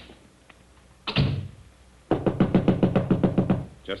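Radio-drama sound effect of knocking on a door: a single thump about a second in, then a fast, insistent run of about a dozen knocks.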